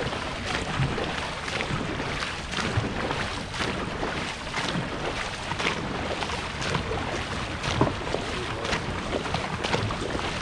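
Dragon boat crew's paddles striking and pulling through the water together, a splash about once a second, over rushing water and wind on the microphone.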